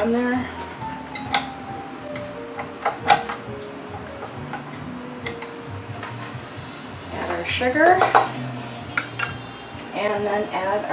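Metal clinks and knocks as a stainless steel mixing bowl and wire whisk are handled and fitted onto a KitchenAid stand mixer: a handful of sharp clinks, the loudest about three seconds in, and a busier clatter near the end. Soft background music runs underneath.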